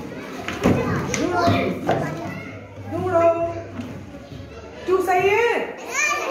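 Several young children chattering and calling out excitedly at once, their high voices rising and falling and overlapping.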